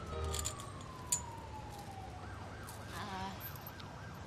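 Distant emergency-vehicle siren over low city traffic rumble: a long falling tone, then a rapid rising-and-falling wail in the last two seconds.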